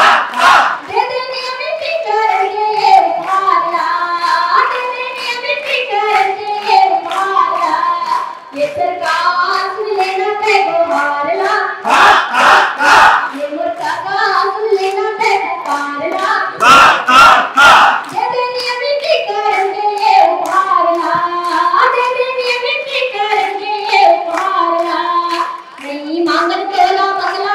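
A woman singing a melody into a microphone, amplified over a PA loudspeaker, while a crowd claps along. The clapping swells louder twice, about twelve and seventeen seconds in.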